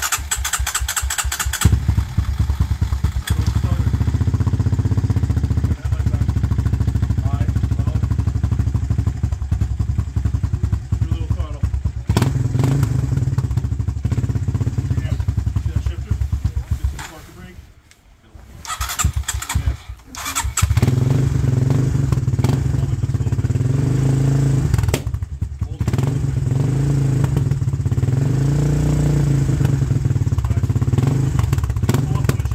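Honda sport quad's single-cylinder engine, fitted with a Yoshimura aftermarket exhaust, cranking on the electric starter and catching at once, then running. About 17 seconds in it stalls, cranks again and restarts a few seconds later: the engine is cold and will not yet idle reliably.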